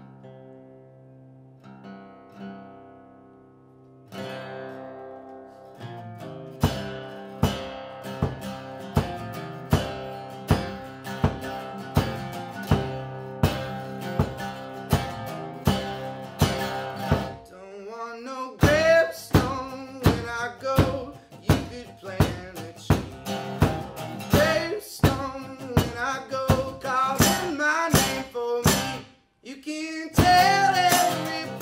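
Acoustic guitar opening a country-folk song: a few ringing notes, then steady strumming from about four seconds in, about three strums every two seconds. A harmonica comes in over the guitar a little past halfway.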